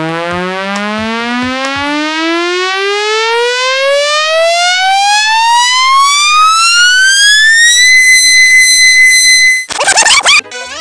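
Comedy sound effect: one buzzy electronic tone that rises steadily in pitch for about eight seconds, then holds at a high pitch. Near the end it cuts off suddenly into a clattering crash.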